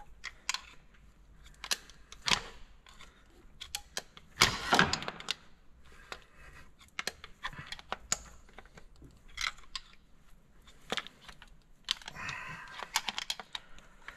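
Irregular light metallic clicks and taps of hand tools working at a pump-injector in a diesel cylinder head, with a louder burst of rattling about four and a half seconds in.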